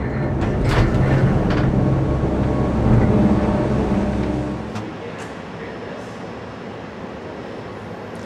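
Cable car cabin running through its station: a loud, steady low machinery hum with a few sharp clunks. The hum cuts off suddenly a little past halfway, leaving a quieter steady hiss.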